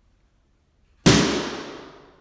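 A single sharp bang, the impulse for a reverberation-time test, about a second in. It is followed by the room's reverberation dying away over about a second: a long echo tail from concrete floors and ceiling, gypsum walls and glass, which the instruments measure at about 1.3 to 1.4 seconds.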